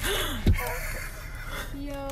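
A person's sharp, breathy gasp of alarm as a bear comes right up to the car door, with a short thump about half a second in.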